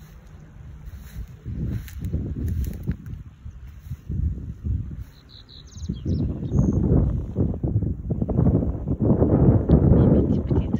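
Wind buffeting the microphone in gusts, growing stronger in the second half. A bird gives a few brief high chirps around five to six seconds in.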